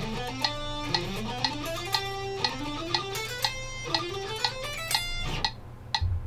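Electric guitar playing fast ascending scale runs, several climbing sweeps one after another, over a metronome clicking at 120 beats per minute, two clicks a second. The guitar stops about half a second before the end while the clicks go on.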